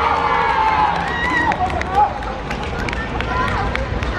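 Children's high voices shouting and cheering together as a goal is celebrated, several at once. Scattered sharp taps follow, with one short, louder knock about halfway through.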